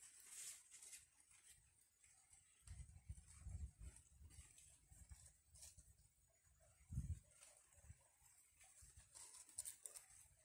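Near silence: faint outdoor background with a few soft low rumbles, first about three to four seconds in and again, most strongly, about seven seconds in.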